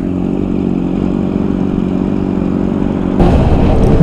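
Honda CBR600RR sport bike's inline-four engine running at steady revs while cruising. About three seconds in, the sound turns louder and rougher.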